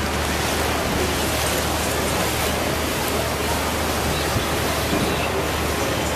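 Steady rushing of wind over the microphone and water churning along the hull of a moving river tour boat, over a low, steady hum.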